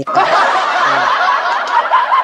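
Many people laughing at once: a dense, continuous mass of overlapping laughter, like a laugh track.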